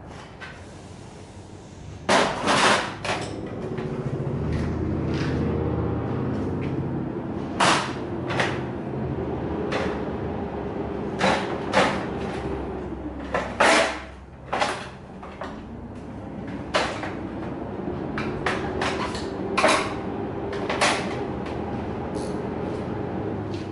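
Workshop sounds: sharp, irregular knocks and clanks of tools and parts being handled, over a steady mechanical hum that starts about four seconds in and slowly wavers in pitch.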